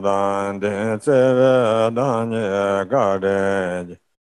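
A man chanting a Tibetan Buddhist guru supplication prayer in Tibetan. It is a low, near-monotone recitation in short phrases with brief breaks, and it cuts off at the very end.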